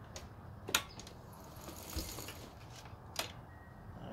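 Handling noise: a few sharp clicks and knocks, the loudest about three quarters of a second in and another near the end, with a brief rustle around two seconds, over a low steady hum.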